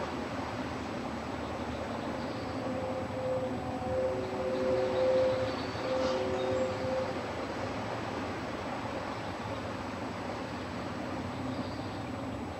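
Steady outdoor background rumble. A distant horn-like chord of two or three held tones sounds for about four seconds in the middle, with a brief break near its end.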